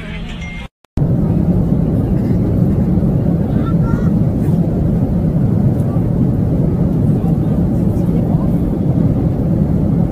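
Airliner cabin noise in flight: a steady, loud roar of the jet engines and airflow heard from inside the cabin, starting about a second in.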